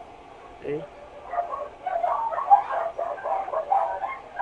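A quick run of short, high-pitched, overlapping yelps and whines from an animal, starting about a second in and running on without a break.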